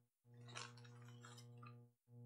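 Near silence: a faint steady low hum, with faint rustling about half a second in.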